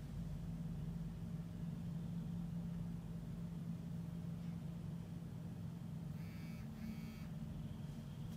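Steady low background hum. Two short buzzy high-pitched chirps come close together about six seconds in.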